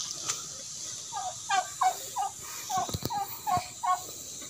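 A quick run of about eight short animal calls, each bending in pitch, a few tenths of a second apart, with a couple of sharp knocks among them.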